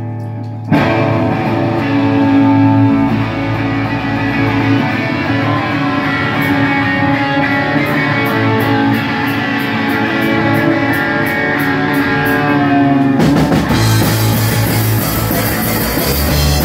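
Live electric guitar intro of a rock song through an amplifier, held ringing chords starting about a second in, with light regular ticks about twice a second in the middle. Near the end the full rock band with drum kit comes in.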